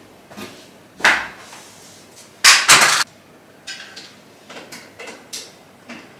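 Knocks, clatter and clicks of things being handled at a bedside table: one knock about a second in, a loud pair of sharp knocks about two and a half seconds in, then several lighter taps and clicks.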